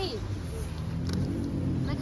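Low steady rumble of a car engine running, with a single faint click about a second in.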